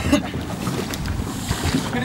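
Steady rushing noise aboard an open boat on a lake, with wind buffeting the microphone.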